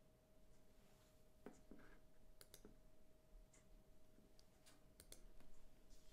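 Near silence: room tone with a faint steady hum and a scattering of faint short clicks.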